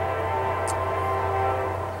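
Locomotive air horn sounding a steady chord of several held tones, with a low rumble underneath.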